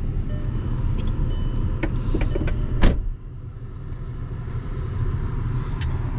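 2013 Volkswagen Passat's engine idling, heard inside the cabin as a steady low rumble, with a few clicks; the loudest click comes about three seconds in, and the level dips briefly after it before climbing back.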